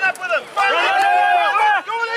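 Children's high-pitched voices shouting, with one long drawn-out call from about half a second in.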